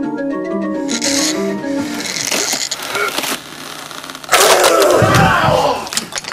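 Organ music that breaks off about a second in. It gives way to loud, harsh, noisy sound that grows loudest about four seconds in.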